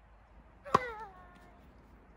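Tennis racket striking a tossed ball once, about three quarters of a second in: a sharp hit followed by a short ringing twang that dips slightly in pitch as it fades.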